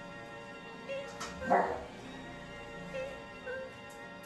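A dog barks once, short and sharp, about one and a half seconds in, with fainter dog noises around one second and again near three seconds, over soft background music.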